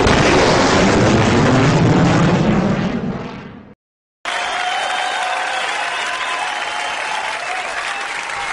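Edited sound effects: a sudden explosion-like blast that fades away over about three and a half seconds, then, after a brief silence, steady crowd noise and applause that cuts off suddenly near the end.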